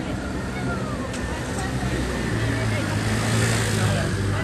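Street crowd chatter mixed with a motor scooter's engine running as it passes. The engine hum grows louder near the end.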